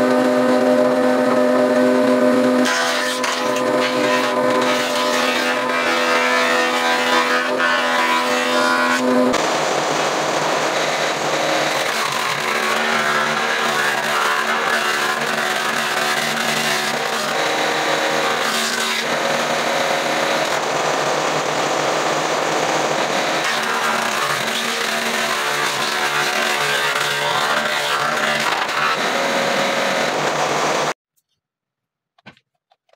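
Woodworking planing machines running: a jointer's motor and cutter head with a steady pitched hum for about the first nine seconds, then a thickness planer cutting a wooden board, a rougher steady noise to the end.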